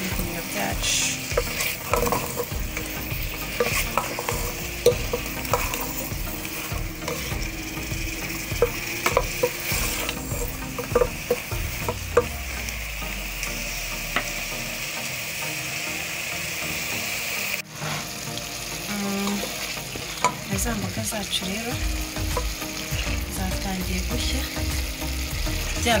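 Sliced mushrooms, carrots, peppers and onions sizzling as they fry in a metal pot, stirred with a wooden spoon that scrapes and knocks now and then against the pot.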